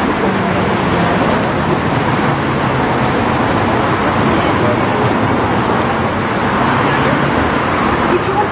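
Steady city street traffic noise mixed with the indistinct talk of a crowd gathered on the pavement.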